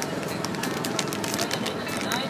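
Clear plastic bag of prawn crackers crinkling with quick sharp crackles as it is handled, over a steady din of background voices and street noise.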